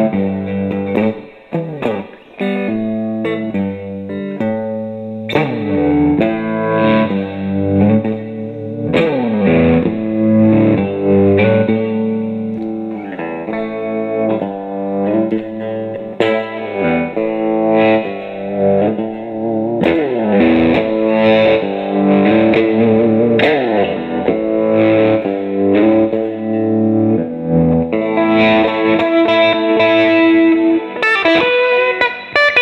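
Electric guitar, a 1980s Fender American Standard Stratocaster E-series, played through an effects pedal into a Fender Blues Junior combo amp: chords and riffs played continuously with changing chord shapes.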